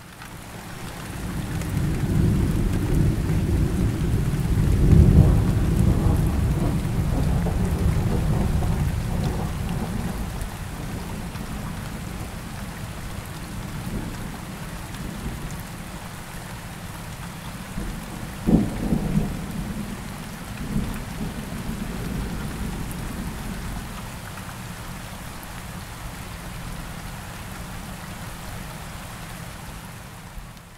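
Steady rain with thunder: a long, loud rumble of thunder over the first third, a shorter clap a little past the middle, then rain alone, quieter.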